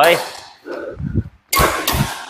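Badminton racket hitting a shuttlecock with a sudden sharp crack about one and a half seconds in, during a cut-shot drill.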